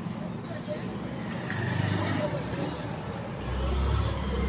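Indistinct background voices over a low rumble, which grows louder near the end.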